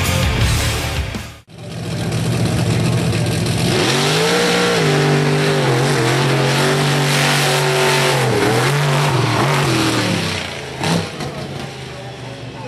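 Brief music cuts off, then the Tailgator monster truck's engine runs hard through a solo drag run. Its pitch climbs about two seconds after the engine comes in and dips a few times before the sound falls away near the end.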